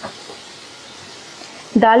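Hot oil sizzling around sliced onions frying in a pan, a soft steady hiss. The onions are fried golden, just before the dal goes in.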